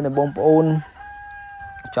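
A rooster crowing faintly: a long held note that sags slightly in pitch, starting about a second in, after a man's voice.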